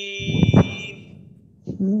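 A man reciting Quranic Arabic: a long held note fades out, with a short noisy burst about half a second in. After a brief pause, the recitation starts again near the end.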